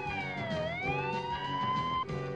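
A wailing siren: one tone that slides down in pitch for about half a second, then climbs slowly back up, over background music.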